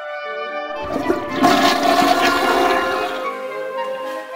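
A loud rushing noise with a deep rumble swells about a second in and dies away about two seconds later, over a background music track whose notes carry on throughout.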